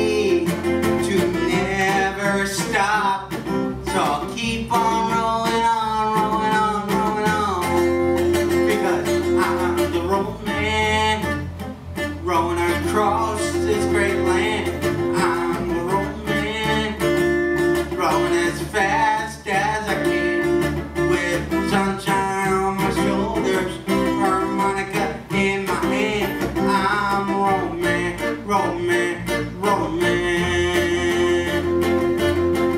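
Live band music: a strummed acoustic guitar over an electric bass guitar playing a steady, continuous song.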